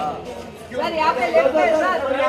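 Several voices talking and calling over one another, a press crowd's chatter, dipping for a moment in the first half second and picking up again before the end.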